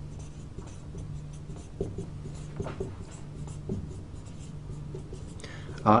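Dry-erase marker writing on a whiteboard: a run of short, faint strokes as letters are drawn. A low steady hum runs underneath.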